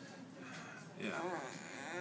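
A girl with severe cerebral palsy making a long, low, steady non-verbal moan that fades out about half a second in. About a second in there is a short wavering vocal sound.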